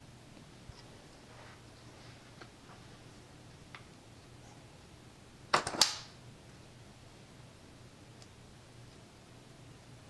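Metal spring latch of a springform cake pan being released: a sharp metallic snap of two quick clicks about halfway through, against quiet room tone with a faint low hum.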